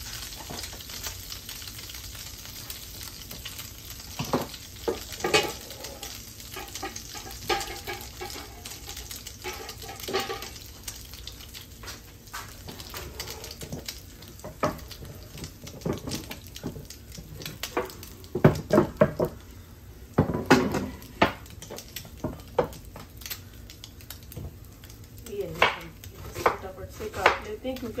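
French toast frying in a nonstick pan with a steady sizzle, over which come scattered clinks and knocks of utensils and cookware, loudest in a cluster about two-thirds of the way through and again near the end.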